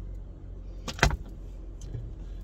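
Car engine idling, heard inside the cabin as a steady low hum, with a pair of sharp clicks about a second in.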